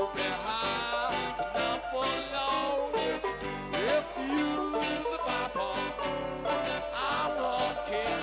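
Live band playing a slow swing tune, with a plucked upright double bass and strummed strings, and a sliding note about halfway through.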